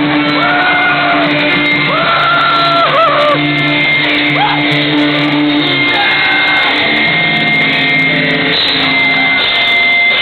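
Punk band playing live: loud, steady guitar chords with shouted vocals over them in the first half, the band holding new low chords from about seven seconds in.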